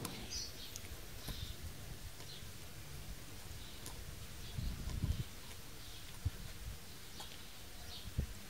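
Faint bird chirps in the background, short and scattered, with a few soft low knocks and handling noises near the middle as a valve-core tool is worked on a tyre valve.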